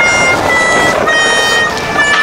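An edited-in electronic sound: held high synthetic tones that change pitch a few times, over a steady noisy background.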